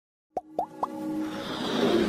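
Three quick cartoon 'plop' pops, each a short upward pitch glide, about a quarter second apart, followed by a swelling musical riser that builds toward the end: the sound design of an animated logo intro.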